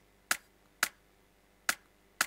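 Dry clap sample used as the main snare layer of a drum and bass break, played on its own: three short, sharp hits with little low end, in an uneven drum pattern.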